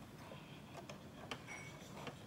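A few faint clicks and taps of a metal presser-foot attachment being fitted by hand onto a sewing machine's presser bar.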